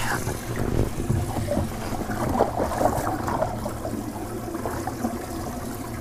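Water splashing and trickling at the surface beside a boat while a hooked bass is reeled in, over a steady low hum.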